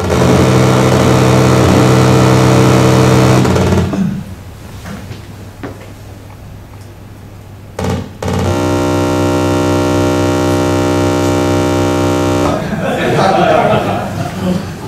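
Loud, steady electronic buzz from the Ferranti Pegasus computer simulator as its factorising program runs, in two stretches of about four seconds each with different pitch, separated by a pause with a brief burst.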